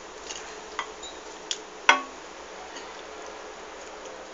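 A few light clicks and knocks of a kitchen utensil against a pan and a small bowl. The loudest comes about two seconds in with a short ring, over a steady low hiss.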